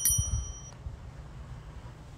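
A single bright metallic ding right at the start, ringing clearly and fading out within about a second, with a low rumble under its first half second; then quiet background.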